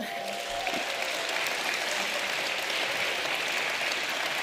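Conference audience applauding steadily after a line of a speech.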